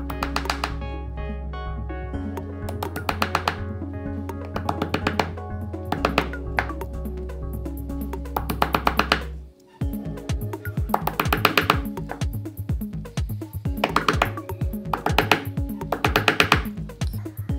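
Background music over bursts of quick hammer taps on a nail, punching holes through the bottom of an ice-filled tin can. The music drops out for a moment and changes about ten seconds in.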